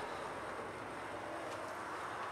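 Faint, steady background hiss of room tone with no distinct events.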